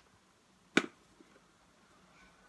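A single sharp click about three-quarters of a second in, with a brief ring after it.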